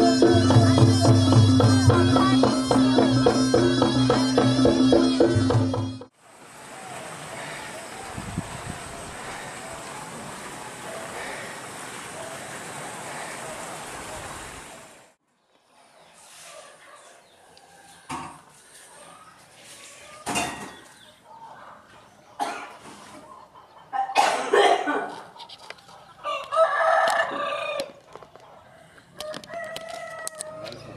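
Loud traditional Javanese reog music with drums and sustained reed-like tones for the first six seconds, then it cuts off. A steady hiss follows for about nine seconds. After that the ambience is quiet with scattered small knocks, and a rooster crows near the end.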